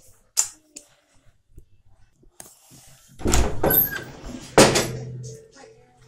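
A sharp click about half a second in, then two loud thumps with a rumbling, handling-like noise, the first about three seconds in and the second, sharper one about four and a half seconds in.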